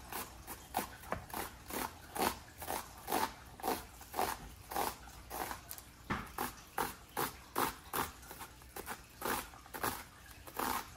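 Kitchen knife chopping an onion on a plastic cutting board: evenly paced cuts, about two a second.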